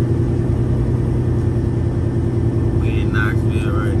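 Semi truck's diesel engine running steadily at a slow crawl, a low even drone heard from inside the cab.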